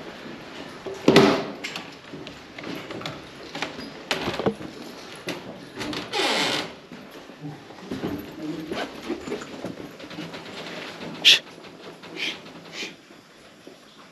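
Irregular footsteps, knocks and rustles of people walking through a building's corridors. There is a louder rushing sound about six seconds in and a single sharp knock a few seconds before the end.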